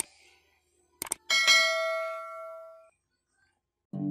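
Subscribe-button animation sound effect: two quick mouse clicks about a second in, followed by a single bright notification-bell ding that rings out and fades over about a second and a half.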